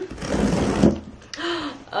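Scissors slitting the packing tape on a cardboard box, a rasping scrape that lasts about a second, then a short rustle of cardboard as the box flaps are pulled open.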